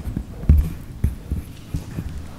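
A handful of dull, low knocks and bumps, about three a second and the loudest about half a second in, as a large mounted display board is handled and set up on an easel.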